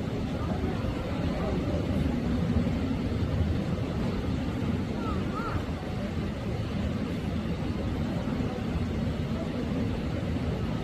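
Indistinct murmur of people talking over a steady low rumble, with no clear words; a brief faint chirp about halfway through.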